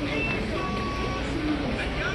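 A shopping cart rolling across a supermarket floor, its wheels giving a steady low rumble.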